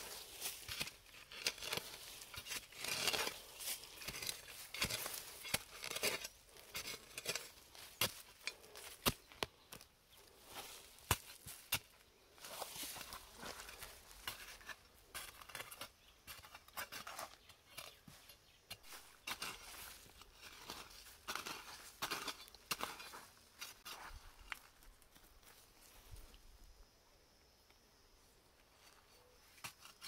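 Hand hoe chopping into earth and roots and scraping soil aside: a run of irregular sharp strikes and scrapes, digging up cassava roots. The strokes thin out and grow quieter near the end.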